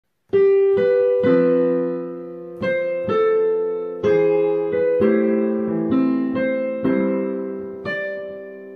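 Piano accompaniment playing a slow introduction: chords and melody notes struck about once or twice a second, each fading away, starting about a third of a second in.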